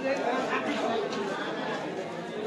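Several people talking at once: overlapping crowd chatter.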